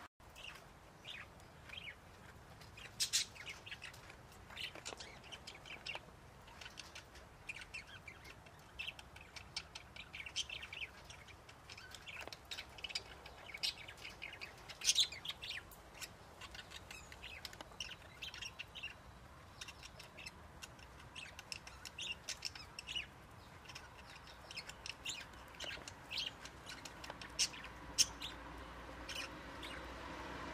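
Small birds chirping, many short high chirps scattered irregularly throughout, over a faint steady outdoor background.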